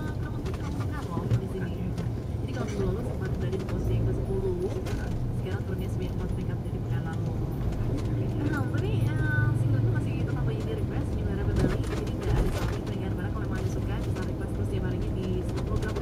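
Inside a slow-moving car: a steady low engine and road rumble, with indistinct voices over it.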